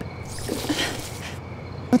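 Steady, faint chirring of crickets in a night-time ambience. From about half a second in, a breathy, rasping noise lasts about a second.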